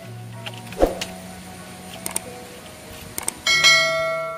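A few sharp clicks and knocks from a split-bamboo talupuh mat being stepped on barefoot, the loudest about a second in, over soft background music. About three and a half seconds in, an acoustic guitar chord rings out loudly.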